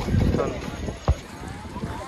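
Busy street ambience with faint voices and a low rumble at the start, broken by one sharp knock about a second in.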